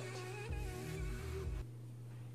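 Unidentified noises from downstairs in the house: low thumps mixed with a wavering pitched tone, stopping about a second and a half in, over a steady low hum.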